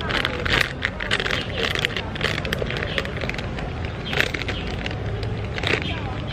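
Crinkling of a Doritos foil snack bag being handled and tortilla chips being crunched. The sharp crackles come thickly in the first two seconds or so, then a few more near the middle and end, over a low steady rumble.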